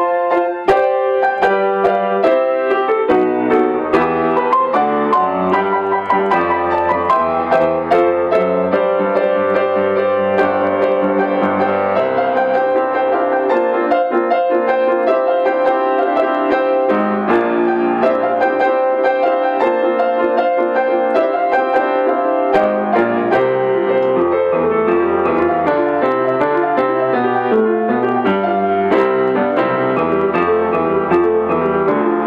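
Grand piano played solo: a steady, flowing run of notes, with low bass notes dropping out for about ten seconds in the middle.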